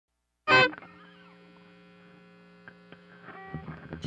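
A short pitched note sounds about half a second in and dies away quickly. A steady low electrical hum follows, with two faint clicks and more sound building toward the end as the song gets under way.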